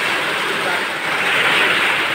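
Heavy typhoon rain pouring down in a steady rush, growing louder from about halfway through.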